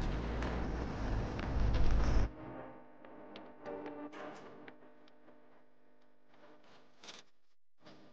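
Wind on an action camera's microphone and tyre rumble as a mountain bike rolls down a frosty grass slope, cutting off abruptly about two seconds in. Then faint music with held notes.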